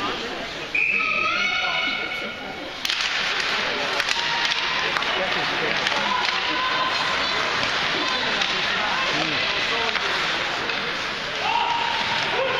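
Ice hockey rink noise during play: spectators calling and talking, with a shout near the start. A loud wash of arena noise sets in suddenly about three seconds in, and a few sharp clacks of sticks or puck come soon after.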